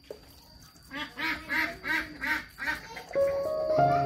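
A bird calling about six times in quick succession, each call short and arched in pitch. Background music with held notes starts about three seconds in.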